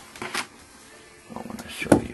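Handling noise from lifting the thin plexiglass enclosure door: a couple of light clicks, then a sharp knock just before the end.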